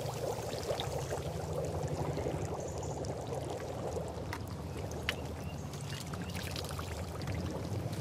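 Brine boiling in an open salt pan, a steady dense bubbling as it is boiled down to crystallise salt, with two short sharp clicks around the middle.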